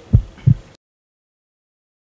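Heartbeat sound effect: one beat of two low thumps about a third of a second apart, after which the sound cuts off to silence.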